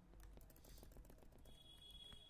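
Faint, scattered clicks of computer keyboard keys being typed.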